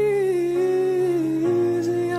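Acoustic pop cover song: a singer holds long, wordless notes that dip slightly in pitch about half a second in, over soft sustained accompaniment chords that change about one and a half seconds in.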